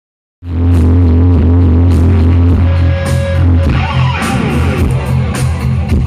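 Live rock band playing loud through a club PA: heavy bass and guitar with drum and cymbal hits. It cuts in abruptly about half a second in.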